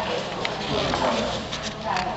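Background chatter of several voices, too mixed to make out words, with a light click about half a second in.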